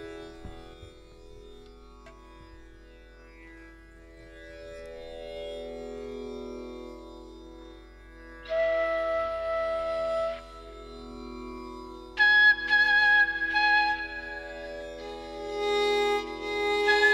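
Tanpura drone, joined by a Carnatic bamboo flute playing its opening phrases in raga Mohanam. A breathy held note comes about halfway through, then a higher sustained note with slight bends near the end.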